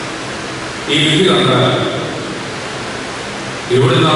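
A man speaking into a microphone over a public-address system, in two phrases, about a second in and near the end. A steady hiss fills the pauses between them.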